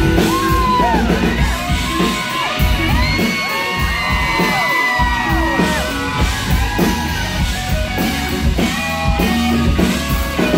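Live country-rock band playing loudly, with electric guitars and a sung vocal line, amid yells and whoops from the crowd.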